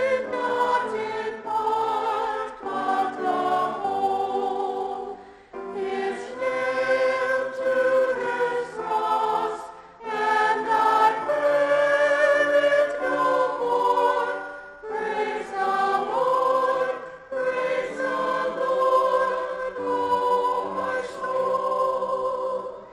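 Church choir of men and women singing together, in sustained phrases with short breaks between them.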